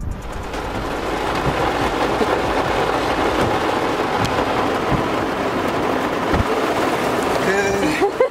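Heavy rain falling steadily, heard from inside a pickup truck's cab as it beats on the roof and windshield.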